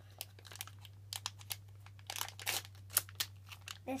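Foil blind-bag packet crinkling as it is handled in a child's hands, in irregular crackles.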